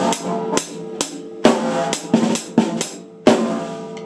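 Drum kit played with sticks: about nine hard, off-centre snare hits that catch the rim. Two of the strikes, about a second and a half in and near the end, are louder and ring on with a long cymbal-like wash.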